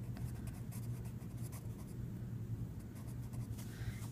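Colored pencil scratching across lined notebook paper as a word is written out by hand, a light irregular scratching over a steady low hum.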